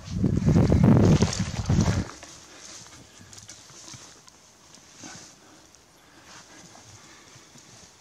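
Loud rustling and uneven thumps of a person getting up and moving through long dry grass close to the microphone, lasting about two seconds, then only a faint background.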